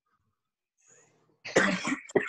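Near silence, then a person coughs about one and a half seconds in.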